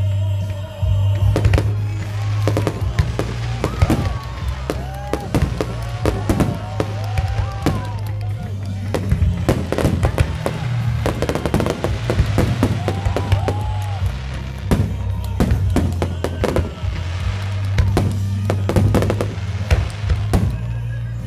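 Fireworks display: repeated bangs and crackling from bursting aerial shells and low fountain fireworks, going on throughout, over music with a steady bass line.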